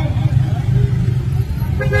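Steady low rumble of road traffic, a motor vehicle's engine running close by.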